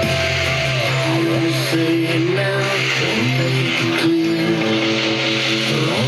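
Country music on FM radio, with guitar and bass playing at a steady loudness through car speakers.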